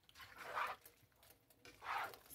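Bow-tie pasta and chicken in a thick cream sauce being stirred in a nonstick skillet with a plastic slotted turner: wet squelching strokes, one about half a second in and another near the end.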